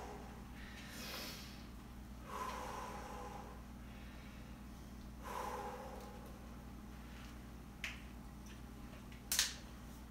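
A man breathing hard after exercise, with a few loud breaths out a few seconds apart as he recovers. A brief sharp sound comes near the end.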